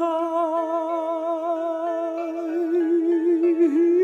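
Background song: a voice holding one long note with a slow vibrato over soft, sustained accompaniment.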